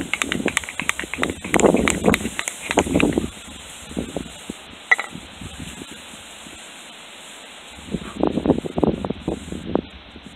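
A wooden rolling block scrapes rapidly back and forth over a shale slab for about three seconds, rolling a cotton fire roll hard between them to build friction heat for an ember, then stops. A second short burst of rough rustling comes near the end as the roll is handled, with wind buffeting the microphone.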